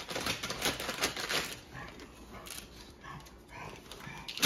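Brown paper gift bag crinkling and rustling as a pug pushes its nose and head into it. The crinkling is dense for about the first second and a half and comes in sparser bursts after.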